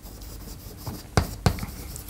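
Chalk writing on a chalkboard: soft scratching strokes, with two sharp taps of the chalk on the board a little past the middle.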